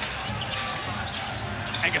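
A basketball being dribbled on a hardwood court over steady arena crowd noise. A commentator's voice comes in right at the end.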